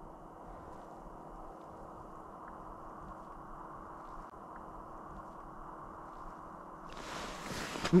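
Faint steady low hiss with a thin, steady hum underneath. About seven seconds in it gives way to louder, brighter noise, ending in a sharp knock.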